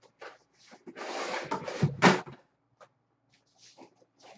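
Handling noise as a cardboard box is pulled out and lifted: a scraping rustle of about a second, ending in a sharp knock about two seconds in, then a few faint taps.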